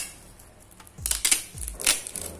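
Clear packing tape being pulled and peeled against a PVC card to lift off its thin protective plastic film: short ripping bursts about a second in and a louder one near the end.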